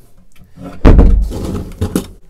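A heavy thump as a white board panel in a camper van's rear storage compartment is handled and set in place, dying away over most of a second, followed by a short knock near the end.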